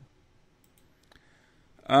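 Near silence in a pause between two voices, broken by one faint click just over a second in; a man's voice begins near the end.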